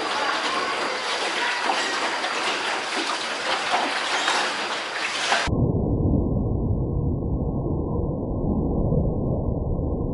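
Steady rushing and splashing of water around a rowed boat under a cave roof. About five seconds in it changes abruptly to a muffled low rumble with all the high sound cut off.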